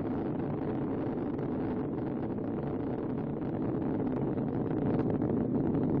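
Steady rumble of Space Shuttle Atlantis's solid rocket boosters and three main engines during ascent, with the main engines throttled down for maximum dynamic pressure. It grows slightly louder near the end.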